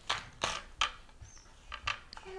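Pomegranate rind cracking and tearing as a scored fruit is pulled apart into halves by hand: a few short, sharp crackles.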